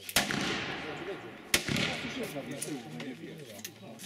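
Two shots from a black-powder revolver, about a second and a half apart, each followed by a short echoing decay.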